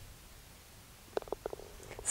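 Quiet, then a few faint short knocks just over a second in as a putted golf ball drops into the cup for an eagle.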